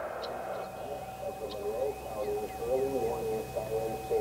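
Faint, echoing voice of distant outdoor warning sirens carrying the same test announcement, over a steady faint tone.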